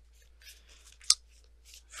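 Cards being handled, with faint rustling and one sharp snap just over a second in.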